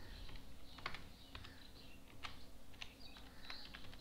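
Typing on a computer keyboard: a faint, irregular run of key clicks as a password is entered.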